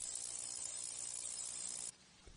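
Ultrasonic cleaner running with carburetor parts in its bath, giving a steady high hiss and buzz that cuts off abruptly just before the end.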